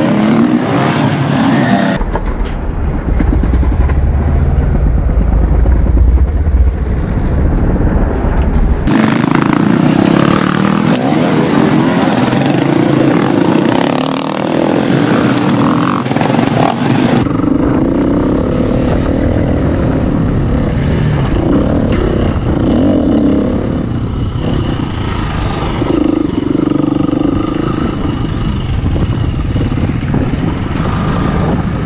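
Off-road dirt-bike engines revving and accelerating across several edited clips, with abrupt changes in the sound at each cut. The longest clip, from a camera riding on a bike, has its engine heard close up under a steady rush of noise.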